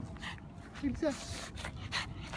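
A pug whimpering as it pulls on its leash, with a couple of short squeaky whines about a second in.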